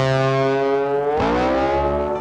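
Intro music: a distorted electric guitar holding a chord, which bends down and slides back up in pitch about halfway through, then rings on.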